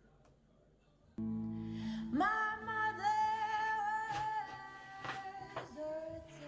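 Near silence for about a second, then a guitar chord and a young woman's voice singing, sliding up into long held notes.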